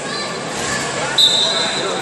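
Referee's whistle blown once, a single steady high whistle lasting under a second that starts the wrestling bout, over a background of crowd voices in a large hall.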